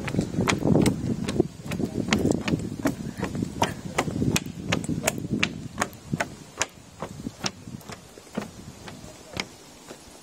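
Footsteps on a wooden boardwalk and wooden stairs, sharp knocks about two a second, over a low muffled rumble that fades after about six seconds.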